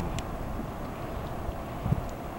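Wind buffeting the microphone outdoors: a low, steady rumble without any distinct machine tone.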